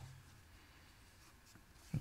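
Very quiet room tone in a small studio, with the last of a voice dying away at the very start.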